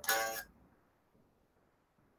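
A single note on a headless electric guitar, cut off abruptly after about half a second, leaving near silence.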